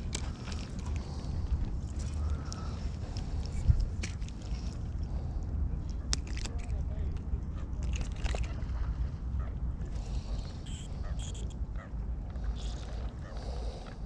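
Steady wind rumble on the microphone, with scattered small clicks and rustles from handling the rod and a small caught bass.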